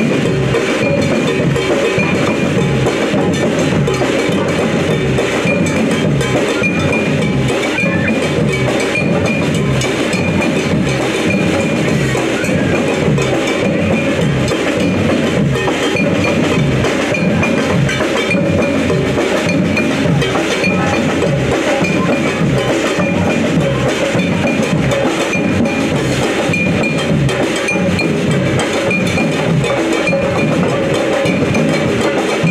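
A brass band with a drum line playing live: a loud, steady, driving drum groove on bass drum, snares and large hand-carried drums, with brass horns over it.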